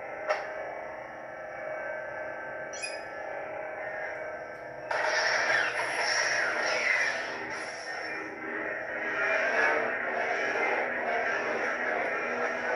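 Lightsaber hilt with a Golden Harvest v3 sound board, its blade lit and humming through the hilt's speaker as a steady pitched hum, with a click just after the start. About five seconds in the hum turns suddenly louder and rougher and stays so.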